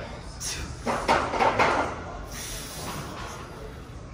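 Gym room sound: indistinct voices and a few knocks and clatter from equipment, loudest between about one and two seconds in.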